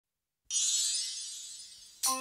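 A single cymbal crash in a reggae dub recording, struck suddenly out of silence about half a second in, then ringing high and fading away.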